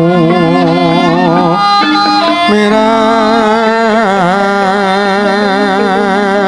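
Javanese gamelan music: a wavering melody line with strong vibrato over sustained lower notes that shift in steps.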